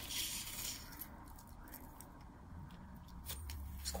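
Faint clinking of a metal curb-chain necklace as it is handled and lifted, with a few soft clicks of the links in the second half.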